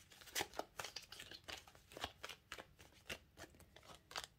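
A deck of tarot cards being shuffled and handled: a faint, irregular run of quick card snaps and slides, several a second.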